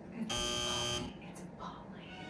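Electronic "wrong answer" buzzer sound effect, one steady buzz of under a second that cuts off abruptly, marking a thumbs-down verdict.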